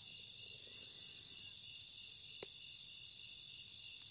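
Faint, steady trilling of crickets at night, with a single soft click about two and a half seconds in.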